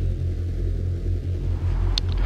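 A steady low rumble with nothing on top of it.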